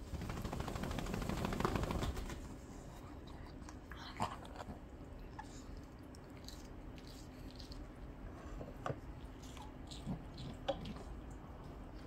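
Shih Tzu dogs crunching and chewing carrot sticks: faint, scattered crunches every second or so, after a louder stretch of noise in the first two seconds.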